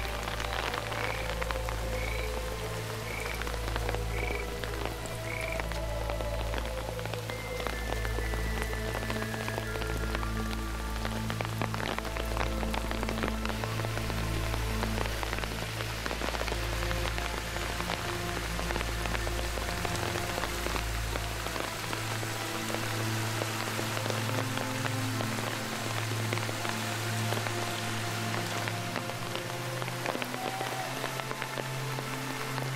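Steady rain falling on wet ground and a stream, under slow ambient music: a low sustained drone with long held notes stepping from one pitch to the next.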